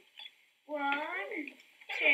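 A high-pitched voice sounding one short phrase with gliding pitch, about a second in, preceded by a couple of faint ticks.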